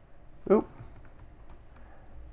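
Faint clicks of a computer keyboard, with a short vocal 'uh'-like sound about half a second in.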